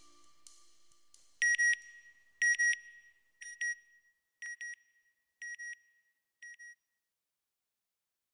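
Closing-logo sound effect: a high electronic double beep that repeats about once a second, six times, fainter each time like an echo. The last note of the background music dies away in the first second.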